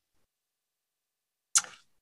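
Dead silence on a video-call line for about a second and a half, then one short hiss-like burst that fades within a fraction of a second.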